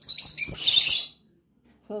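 Birds chirping and squawking: a dense, high twittering for about the first second, then it stops.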